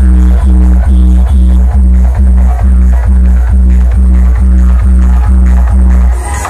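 Electronic dance music played at very high volume through a DJ box sound system of stacked bass speakers and horn speakers, with a heavy bass beat a little over two times a second.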